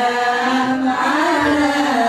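A group of women chanting a devotional recitation together in unison, in long held notes.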